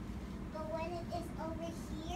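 A young girl's voice making short, held, high notes in a sing-song way, beginning about half a second in, over a steady low room hum.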